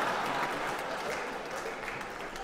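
A stand-up comedy audience applauding and laughing in reaction to a punchline, the applause gradually dying down.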